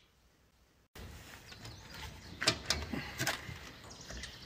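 Silence for about a second, then a faint outdoor background with a handful of light knocks and clicks, the clearest of them about two and a half to three and a half seconds in.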